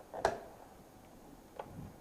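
A lamp's plug being pushed into an outlet: one sharp click about a quarter second in, and a fainter tick about a second and a half in.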